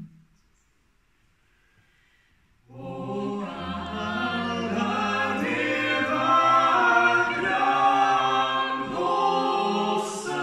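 Four-voice a cappella singing of a traditional Swedish song by three men and a woman. It opens with a pause of near silence, then the voices come in together almost three seconds in, with a low bass note joining about a second later and held under the harmony.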